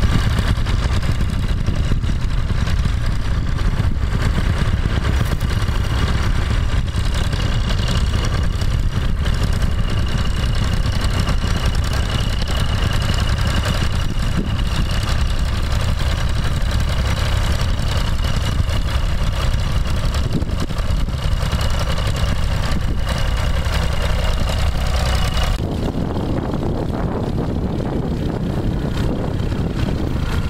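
Vintage tractor engine running steadily as it pulls a plough, under heavy wind rumble on the microphone. The sound changes abruptly near the end.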